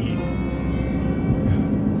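Background music over the steady road and engine noise heard inside a moving car's cabin.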